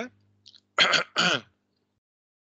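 A man clearing his throat in two short rasps, about a third of a second apart, a little under a second in.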